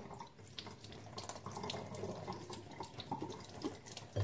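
Kitchen tap running a steady stream of water into the sink, now run warm to lukewarm, with a few light clicks.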